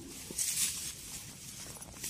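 Footsteps and rustling of grass and weeds as people walk through dense vegetation, loudest about half a second in.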